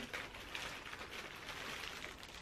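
Faint rustling and crackling from hands handling and opening a small cosmetic vanity pouch.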